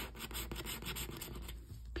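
A green plastic scratcher disc scraping the coating off a scratch-off lottery ticket in quick, repeated short strokes. The coating on this ticket is hard to scratch off.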